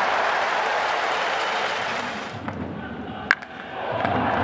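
Stadium crowd clapping and cheering that dies down. About three seconds in comes a single sharp crack of a baseball bat hitting a pitch, the loudest sound, and the crowd noise swells again just after.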